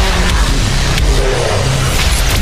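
Loud movie-trailer sound effects: a dense, deep rumble.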